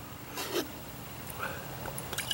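Quiet handling of a glass beer bottle and glass mug as they are lifted into position for pouring, with a faint short rustle about half a second in; no liquid is flowing yet.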